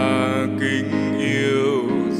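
A slow Vietnamese worship song: a solo singer holds and glides through sung notes over piano accompaniment.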